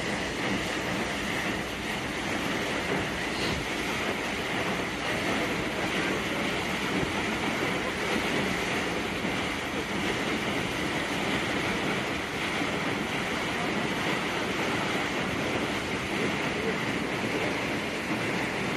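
Garinko-go III ice-breaking ship pushing through drift ice, its bow screws crushing the ice: a steady rushing, grinding noise mixed with wind on the microphone.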